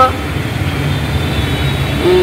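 Steady low background rumble in a short pause between spoken phrases.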